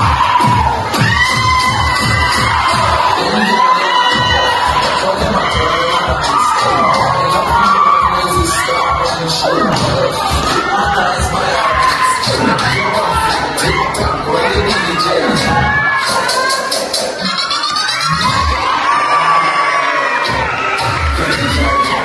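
A large audience cheering and shouting over loud dance music with a steady beat from the loudspeakers, for a dance crew's routine. A quick run of rising high sweeps cuts through late on.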